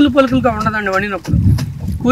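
A man talking in Telugu, with a low wind rumble on the microphone that stands out in a short pause about a second and a half in.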